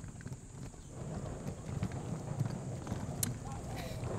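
Small wheels of a rolling suitcase rumbling and clicking over paved ground as it is pulled along.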